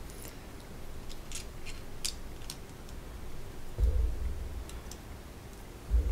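Small plastic LEGO pieces being handled and pressed together, giving light, scattered clicks, with a low bump about four seconds in.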